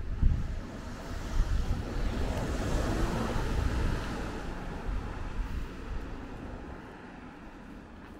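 A small kei car drives past, its engine and tyre noise swelling to its loudest around the middle and then fading away. Low wind buffeting on the microphone near the start.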